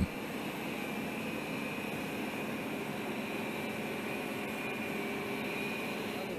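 Steady hiss with a thin high whine, the running noise of aircraft ground support equipment working beside a parked cargo plane on an airfield apron.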